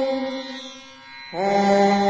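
Intro music of a chanted mantra: a long held note that fades out, then a new held note begins about a second and a half in.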